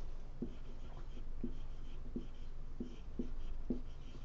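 Dry-erase marker writing on a whiteboard: a string of short strokes, a little under two a second, as the letters of a word are drawn.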